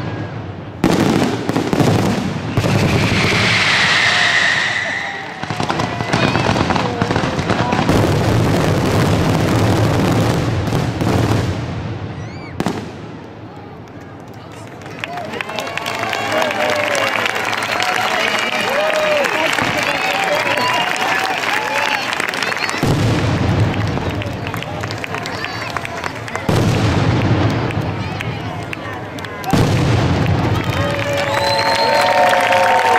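Fireworks display: repeated booms and crackling bursts of aerial shells, easing into a brief lull about halfway through before more bursts follow, with crowd voices over the second half.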